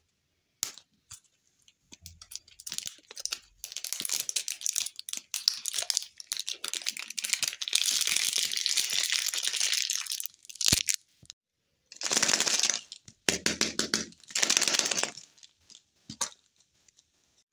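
A crinkly plastic wrapper being torn and peeled off a plastic toy-lollipop ball, crackling for several seconds. Then a sharp click about eleven seconds in and three short bursts of plastic rubbing near the end.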